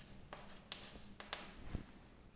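Chalk writing on a chalkboard: a handful of faint, short taps and scratches as a line of writing is finished.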